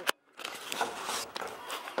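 A sharp click, a brief break, then footsteps on grass with faint voices behind.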